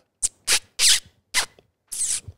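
A woman's lips making about four quick kissing sounds, separate smacks a fraction of a second apart. This is the kissy noise used to call a dog as a positive interrupter, which she finds hard to make loud.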